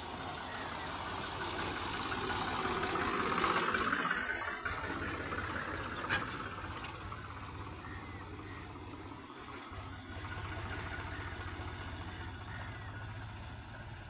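Tractor diesel engines running as tractors with trailers pass along a lane; the engine sound swells, loudest about three or four seconds in as one goes by close, then dies down, with a steady engine hum rising again near the end.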